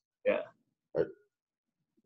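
Speech only: a man's short spoken 'yeah' and a second brief vocal sound about a second in, with dead silence between and after them.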